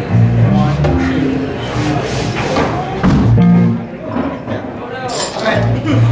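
Live band instruments noodling between songs: scattered electric bass notes and bits of guitar with no steady beat, with voices talking over them.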